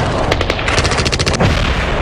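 Rapid burst of automatic gunfire as a sound effect in a news report's intro sting, about a second long, over a steady deep rumble, with a low falling whoosh near the end.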